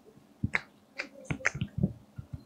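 A series of sharp clicks and taps at an irregular pace, about six of them, starting about half a second in: hands tapping and clapping together while signing.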